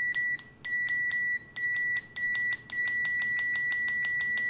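Klein Tools MM720 multimeter's continuity beeper sounding a steady high tone in five beeps of uneven length, the last held nearly two seconds, over rapid clicks of the probe tips tapping together. The beeper is slow to respond and latches on too long.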